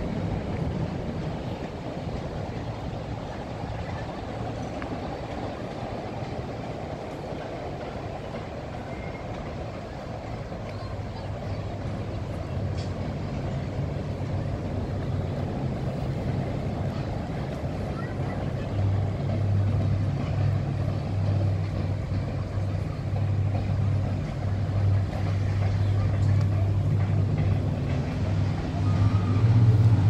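Water taxi's engine running with a low, steady hum that grows louder through the second half, over faint voices and city background noise.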